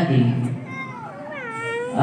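A high-pitched, meow-like cry that falls and then rises in pitch, starting less than a second in.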